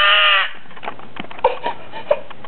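Toddler crying in a tantrum: a loud wailing cry that breaks off about half a second in, followed by short broken sobs and a few faint knocks.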